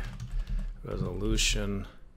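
Typing on a computer keyboard as code is entered, with a man's voice speaking briefly over it in the middle.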